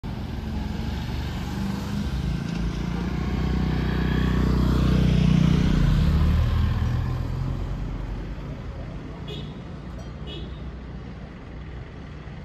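A car's engine running close by, growing louder to a peak about five seconds in, then fading as the car moves off into the general street traffic noise.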